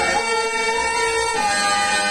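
A male stage singer holding one long drawn-out note of a Telugu drama padyam over a sustained harmonium; the note steps down in pitch about one and a half seconds in.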